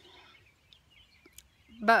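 A pause in a woman's talk with only faint outdoor background, until she starts speaking again ("but") near the end.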